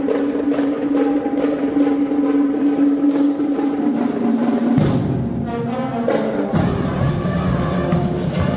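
A school marching band (banda marcial) playing, with drum strokes under a long held note. A bit past halfway the band moves into a new, fuller passage.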